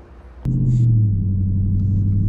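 Steady low drone of a 2020 Dodge Charger Scat Pack's 392 (6.4-litre) HEMI V8 cruising, heard from inside the cabin. It cuts in abruptly with a click about half a second in.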